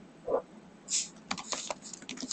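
Computer keyboard being typed on: a quick run of about half a dozen sharp keystrokes in the second half, after a brief low sound about a third of a second in.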